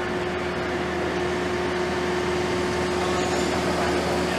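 Steady hum of launch-pad machinery: a constant mid-pitched tone and a lower hum over an even, fan-like rushing noise.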